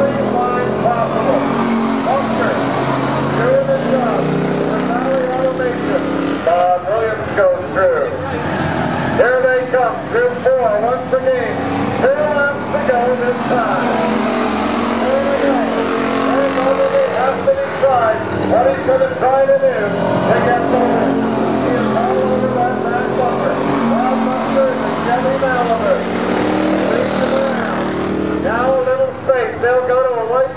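Thunder car stock-car engines running hard around a paved oval, a steady drone with voices talking over it.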